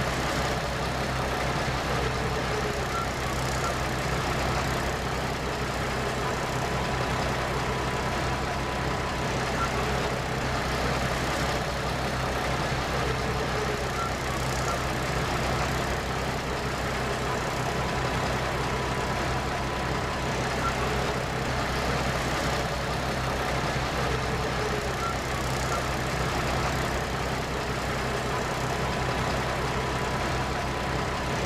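A vehicle engine idling with a steady low hum. A faint thin tone comes and goes about every eleven seconds.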